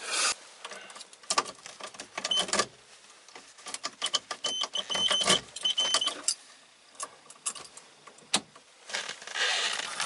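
Car keys jangling, with clicks and rustles of handling inside a car's cabin and a few short high beeps in the middle.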